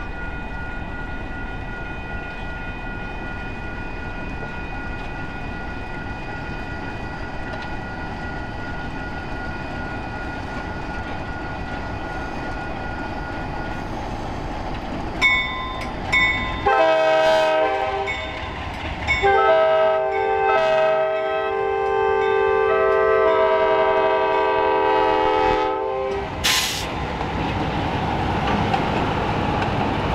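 Air horn of an approaching Alco C430 diesel locomotive sounding for a grade crossing: a few short toots, then a long blast and a second long blast held about seven seconds, over the rumble of the diesels. A brief sharp noise follows, then the rolling noise of the passing locomotives and wheels. Before the horn, a steady high tone sounds over the low rumble.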